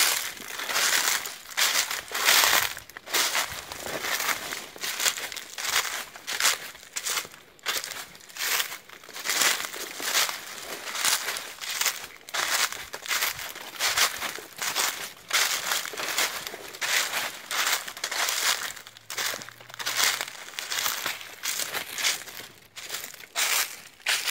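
Footsteps crunching through dry fallen leaves at a steady walking pace, about two steps a second.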